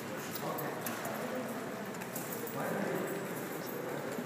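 Footsteps of several people walking on a hard hallway floor, sharp clicks over indistinct voices.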